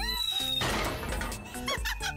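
Cartoon background music with a camera-flash sound effect: a thin high tone for about half a second, then a burst of hiss lasting about a second, followed near the end by short squeaky sound effects.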